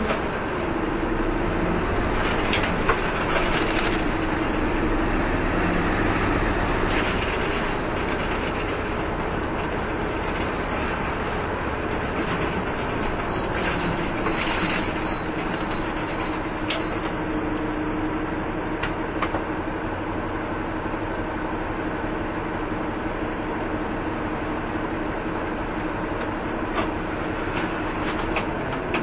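City bus running between stops, heard from inside the passenger cabin: steady engine and road noise with a drivetrain whine that dips, rises and then holds steady in pitch as the speed changes, and scattered small rattles. A faint high whistle sounds from about halfway through for several seconds.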